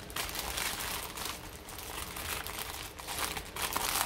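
Plastic packaging crinkling in irregular rustles as small plastic bags of diamond-painting drills are handled.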